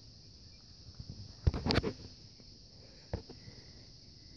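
A few short knocks, two close together about a second and a half in and one just after three seconds, over a steady high-pitched hiss.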